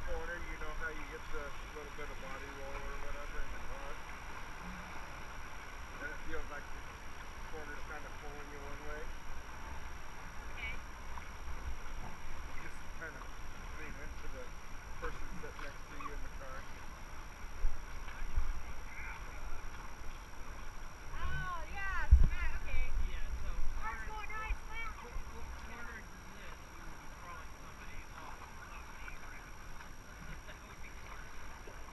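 River water rushing around an inflatable raft, with a steady low rumble underneath and people's voices calling out now and then, loudest a little past the middle.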